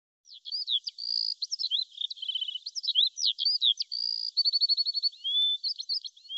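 A songbird singing a rapid, varied song of short whistled notes, glides and trills, including a quick run of about ten even notes near the end.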